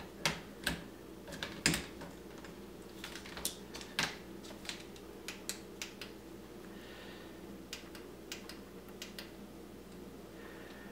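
Irregular small clicks and taps of hands handling a light bar mounted on a PVC enclosure frame, louder in the first couple of seconds and again about four seconds in, over a faint steady low hum.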